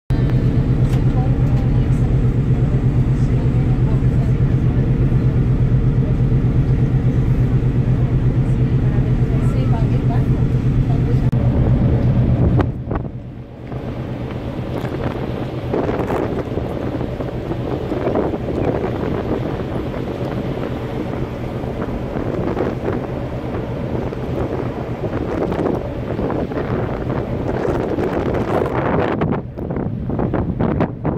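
A ship's engine drone with wind on the microphone, steady and loud for the first dozen seconds. About thirteen seconds in it changes suddenly to uneven wind noise on the microphone out at sea, with indistinct voices.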